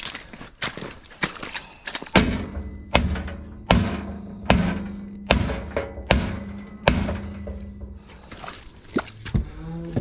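A metal cattle chute being adjusted: a run of about seven evenly spaced metallic clanks, a little under a second apart, each leaving a ringing tone, with lighter clicks and rattles before and after.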